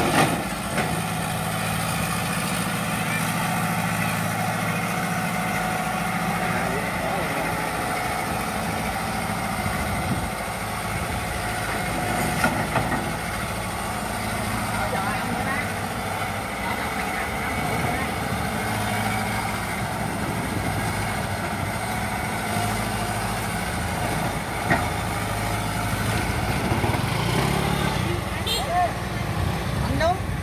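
Diesel engine of a Kobelco Yutani SK045 excavator running steadily, its pitch shifting a little as it works.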